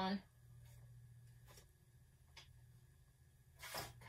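A few faint clicks as a digital scale is switched on and zeroed, over a steady low hum in a small room. A brief rustle comes a little before the end.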